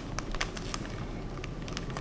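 Plastic zip-lock bag crinkling and crackling as it is handled, a scatter of small sharp clicks.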